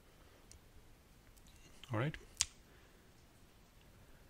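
Quiet room tone broken by a single sharp click of a computer mouse button about two and a half seconds in.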